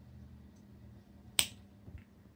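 A single sharp finger snap about one and a half seconds in, with a fainter click just after, over quiet room tone.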